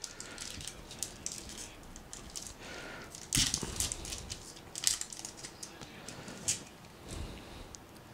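Foil trading-card pack wrapper being torn open by hand: a series of short crinkling rustles, the loudest a little past three seconds in.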